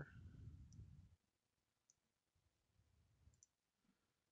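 Near silence, with a few faint computer-mouse clicks, single and doubled, spaced a second or more apart.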